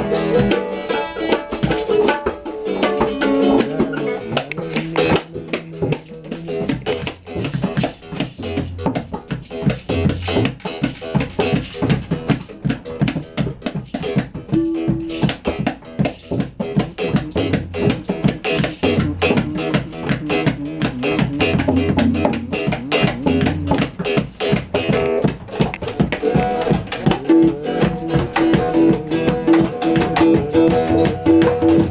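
Acoustic guitar played with rapid, dense picking, accompanied by tabla drums in a free improvised duet.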